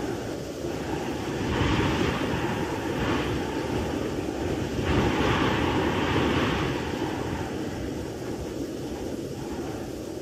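A deep rushing roar that swells twice, about one and a half seconds and five seconds in, then eases off.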